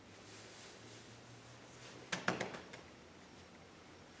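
Faint room tone, then about two seconds in a short cluster of quick taps and rustles as the grappling students' uniforms and bodies move against the foam mat.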